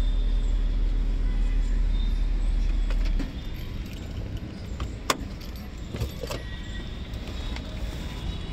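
Mahindra XUV500's diesel engine idling, heard from inside the cabin as a steady low hum, stops suddenly about three seconds in. A few sharp clicks follow, the loudest about five seconds in.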